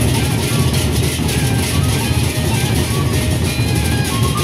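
Gendang beleq ensemble: large Sasak double-headed barrel drums beaten with sticks in a dense, continuous rhythm, with cymbals ringing above the drums.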